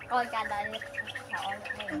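Small birds chirping in quick, repeated high notes, over children's voices talking.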